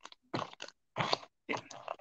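A paper magazine rustling and crinkling as it is handled, in a few short, irregular bursts.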